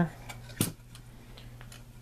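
A sharp knock about half a second in and a few faint clicks as the opened case of a hobby battery charger is handled and moved about, over a low steady hum.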